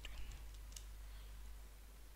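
A few faint clicks of calculator keys being pressed as figures are added up, mostly within the first second.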